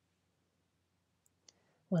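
Near silence with a faint click and then a sharper single click about a second and a half in; a woman starts speaking at the very end.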